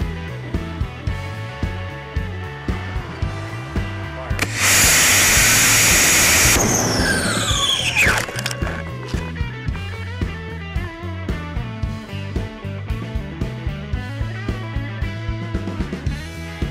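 Rock music with a steady beat throughout. About four and a half seconds in, a model rocket motor's thrust cuts in as a loud rushing hiss lasting about two seconds. A whine falling in pitch follows over the next two seconds.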